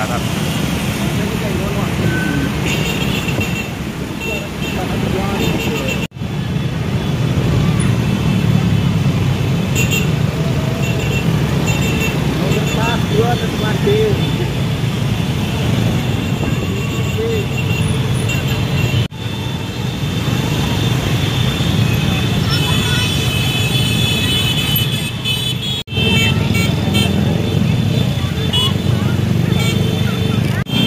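Many small motorcycle and scooter engines running together in a slow, crowded convoy, with crowd voices and horn toots mixed in. The sound drops out sharply three times, each for a moment.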